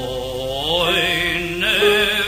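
A male cantor singing chazanut: the voice slides upward into a long held note with vibrato, then moves to a new note near the end, over a sustained accompanying chord.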